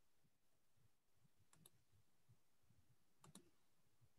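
Near silence: faint room tone with two faint double clicks, one about a second and a half in and another near three and a half seconds.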